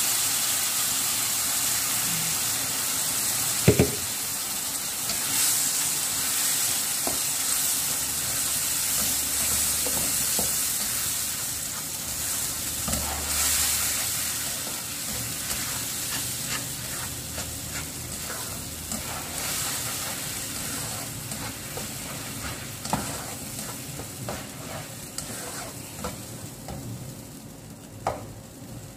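Ground tomato and plum sizzling in a hot wok as it is stirred, the spatula scraping and tapping against the pan. There is one sharp knock about four seconds in, and the sizzle dies down gradually toward the end.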